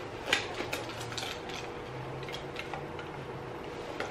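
A few light metallic clicks and clinks, mostly in the first second and a half, from the hardware of a small Balenciaga crossbody bag's strap as it is pulled on over the head.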